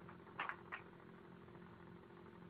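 Faint room tone with a low steady hum, broken by two faint brief noises about half a second in.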